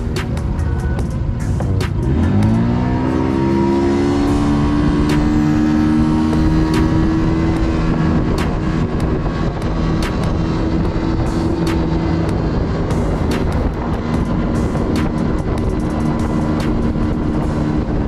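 Boat outboard motor throttling up, its pitch climbing over about two seconds, then running steadily at speed, with scattered sharp knocks.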